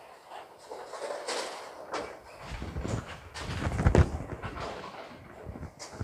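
Bowling-centre sounds: scattered light knocks and clacks, and a low rumble that builds to a peak about four seconds in and then fades.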